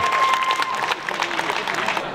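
Crowd clapping and applauding, with a steady high tone held through the first second.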